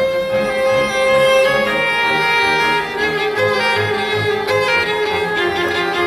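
A string trio of two violins and a bowed double bass playing: a held, singing violin melody over a bass line of short repeated low notes.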